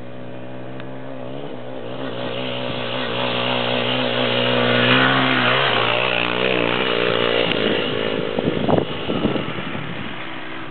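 Dirt bike engine running as the bike approaches, growing louder to a peak about five seconds in, then dropping in pitch as it passes by. Irregular knocks and rumbles on the microphone follow near the end.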